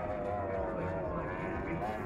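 Racing powerboats' outboard engines running at speed, heard at a distance as a steady buzzing tone that wavers slightly in pitch.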